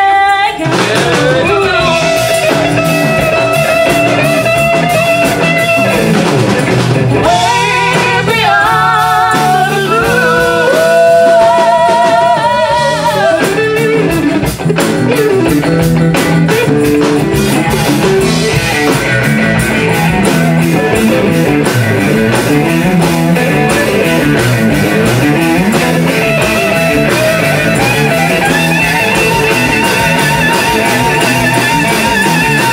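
Live band music: electric guitar over a drum kit, with singing in the first half and a fuller instrumental passage after.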